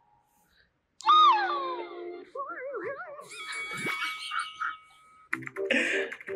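Sound from the compilation video playing on the laptop: after about a second of near silence, a sudden loud pitched sound that slides down and then wavers up and down, followed by a steady held tone, then voices talking near the end.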